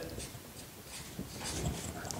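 Faint strokes of a felt-tip marker drawing on paper.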